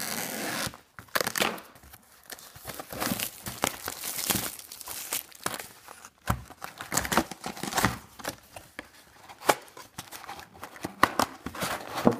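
Plastic wrap on a cardboard trading-card box being slit with scissors and torn away, a long run of tearing and crinkling strokes, busiest in the first second.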